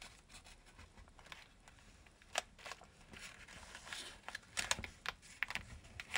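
Origami paper rustling and crinkling as a many-layered folded model is worked and creased by hand. It comes as faint, irregular crackles, with a sharp one about two seconds in and a cluster near the end.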